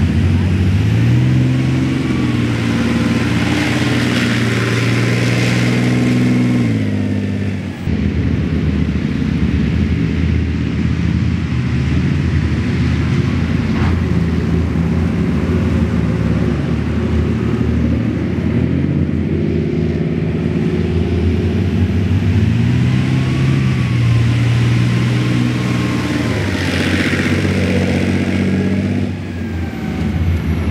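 Leopard 2A6A3 tank's MTU V12 twin-turbo diesel running under load as the tank drives through deep mud, the engine revving up and dropping back twice, with a turbo whistle rising and falling with the revs.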